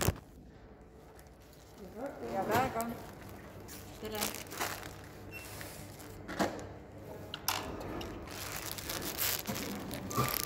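Checkout counter sounds: plastic packaging crinkling and rustling as it is handled, with several sharp knocks of items set down on a wooden counter and a short faint beep about five seconds in. Brief untranscribed speech is heard a couple of seconds in.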